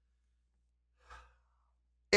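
A man's brief sigh about a second in, otherwise near silence.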